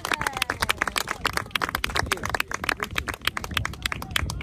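A small group of spectators clapping fast and steadily, with a few voices, applauding a goal.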